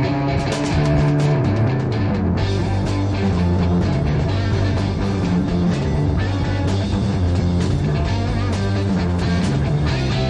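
A live psychedelic rock trio playing: electric guitar over electric bass and a drum kit, with frequent drum and cymbal hits.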